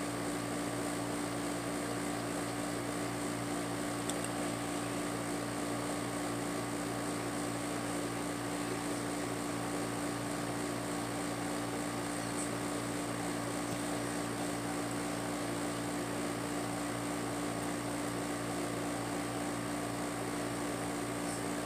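Electric fan running with a steady whirring hum and a constant low drone.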